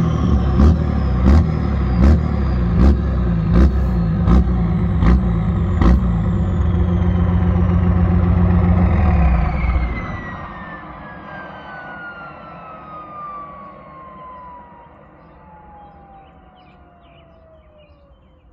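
Diesel truck engine running through a tall bed-mounted exhaust stack, with a sharp crack about every three-quarters of a second for the first six seconds. The engine shuts off about ten seconds in, leaving a whistle that falls slowly in pitch as the turbo spins down.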